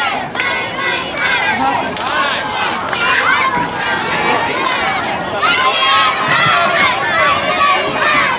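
Many high children's voices shouting and calling over one another, with crowd babble underneath.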